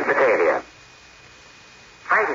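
A short spoken phrase over a shortwave radio relay, then about a second and a half of steady hiss with a faint thin high whine before the voice returns.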